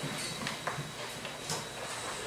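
Sheet of paper handled close to a microphone: a few short, scattered rustles and taps.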